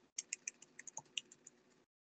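Computer keyboard typing picked up by an open microphone on a video call: a quick run of about ten key clicks, with the line's background hiss cutting in and out abruptly around them.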